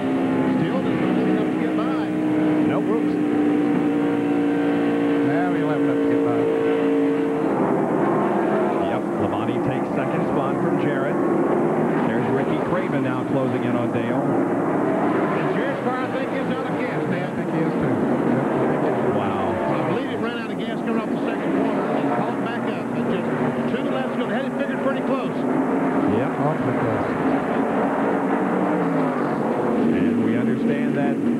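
NASCAR Winston Cup stock cars' V8 engines running at full racing speed. For the first several seconds one engine holds a steady pitch, then several engines layer over one another, rising and falling in pitch as cars go by.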